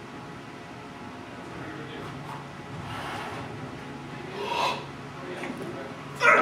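A weightlifter setting up for a snatch at a barbell loaded to 145 kg: quiet rubbing and shuffling over a steady low hum, with a short, louder sound about four and a half seconds in as the lift gets under way.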